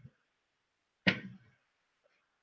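One short, sudden handling sound about a second in, as the drawing paper and pencils on the desk are moved by hand. Near silence before it.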